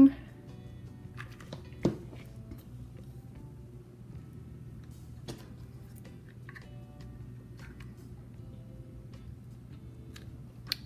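Soft background music under a low steady hum, with small clicks and taps from handling craft materials and one sharper tap about two seconds in.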